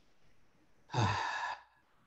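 A man's short sigh-like voiced sound, about half a second long and starting about a second in, with the pitch falling at its onset.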